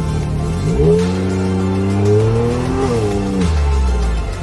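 Side-by-side UTV engine revving up hard under acceleration about a second in, holding high and climbing slowly, then dropping back as the throttle eases near the end.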